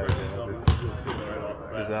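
A basketball bouncing on a hardwood gym floor, one sharp thud a little after half a second in, heard under nearby voices.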